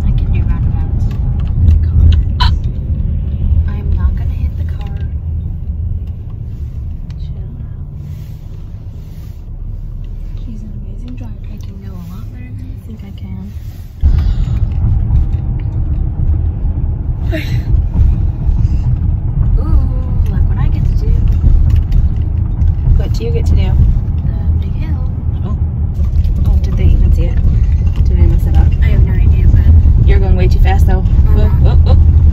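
Steady low road and engine rumble inside a moving car's cabin. The rumble steps up suddenly and louder about halfway through.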